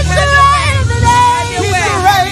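Gospel praise-and-worship singing: several vocalists on microphones with amplified keyboard accompaniment and a steady low bass underneath.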